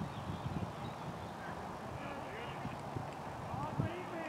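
Distant, indistinct voices of players talking across an open cricket field over a steady outdoor background.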